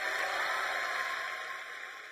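Audience applause after the song ends, a steady hiss of clapping that fades away over the last second.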